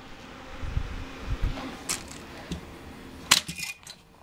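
Handling of a plastic 120 mm case fan against a PC case: a few soft low bumps, then sharp plastic clicks, the loudest a little past three seconds in. A faint steady hum from the running computer sits underneath.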